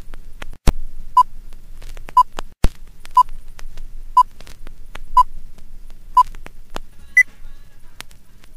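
Old-film countdown leader effect: a short beep once a second, six times, then a single higher-pitched beep. Sharp clicks and crackle like a worn film running through a projector sound throughout.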